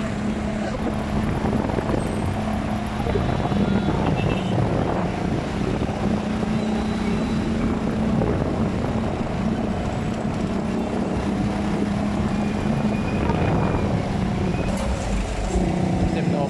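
Steady engine hum with wind and road noise from a vehicle moving through city traffic.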